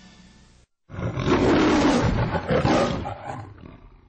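A lion's roar of the kind used on a film studio logo, starting about a second in, loud for about two seconds, then fading out.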